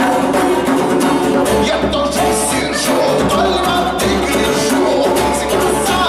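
Live acoustic song: a strummed steel-string acoustic guitar with a man singing, and quick hand-percussion strokes from a second player.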